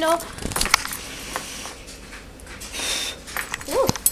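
A person blowing out a jar candle: a breathy rush of air, getting stronger about two and a half seconds in.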